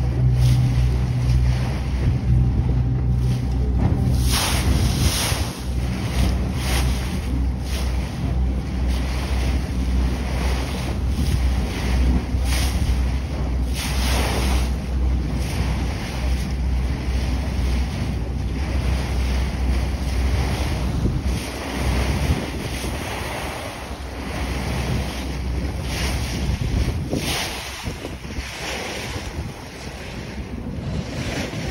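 A boat's engine running with a steady low drone under wind buffeting the microphone and the wash of choppy water. The engine drone fades about two-thirds of the way through, leaving wind and water gusting in surges.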